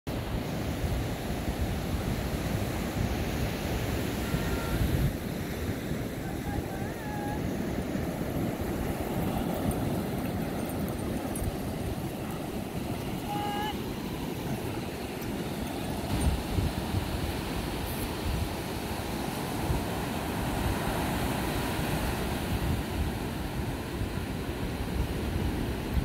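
Wind buffeting the microphone over the steady wash of surf on a beach. A few faint, brief pitched sounds come through the noise, about four, seven and thirteen seconds in.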